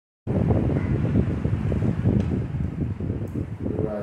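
Wind buffeting the microphone: a loud, low, gusting rumble that starts abruptly and eases slightly towards the end.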